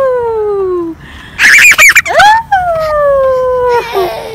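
Playground swing's metal chain hangers squeaking as it swings: a long squeal that slides down in pitch, once with each pass. About a second and a half in, a toddler's short loud squeal of laughter.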